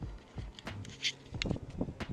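Scattered light knocks and clicks, about four a second, with two sharper high clicks near the middle, over a faint low rumble.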